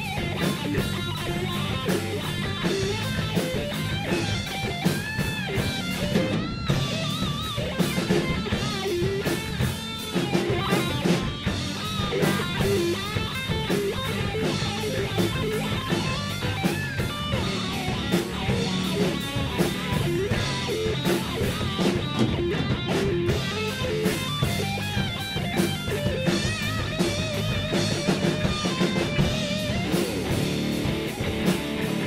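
Live rock band playing an instrumental passage: electric guitar with bent, wavering notes over electric bass and a drum kit keeping a steady beat.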